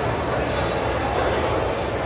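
Steady, loud din of a large indoor hall, with thin high squeals coming and going, about half a second in and again near the end.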